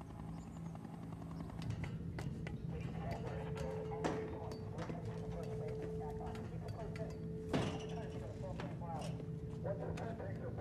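Steady low hum of industrial plant machinery with a higher steady tone coming and going, over scattered metallic clicks and clanks, two of them louder about four and seven and a half seconds in, and faint indistinct voices.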